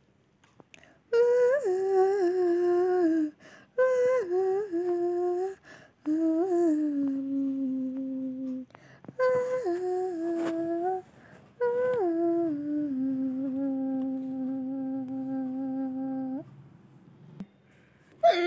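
A female voice humming a slow tune in five drawn-out phrases, each sliding down from a higher note into a long held low note, with short pauses between them.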